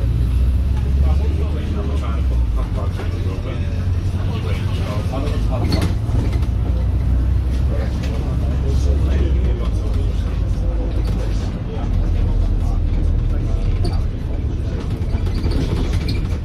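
Inside a moving Volvo B5LH diesel-electric hybrid double-decker bus: steady low engine and road rumble with rattles from the body, and indistinct voices of passengers underneath.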